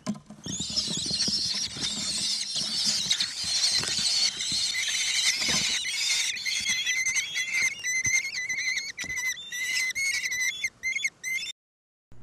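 Common kestrel nestlings begging, a dense shrill chorus of many calls at once as a parent comes to the nest. In the second half it settles into rows of short repeated calls, with knocks and rustling in the nest box early on, and it cuts off suddenly just before the end.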